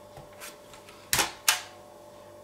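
Two sharp plastic clicks about a third of a second apart, a little past the middle: the sliding back-cover lock on the underside of an HP EliteBook 8570p laptop being slid open.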